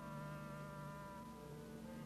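Quiet orchestral passage: soft held notes that shift pitch every second or so, with a soft timpani roll on felt mallets underneath.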